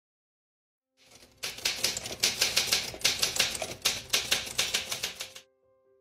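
Manual typewriter typing: a quick run of key strikes, about four or five a second, starting after a second of silence and stopping abruptly. Soft piano notes begin just after it.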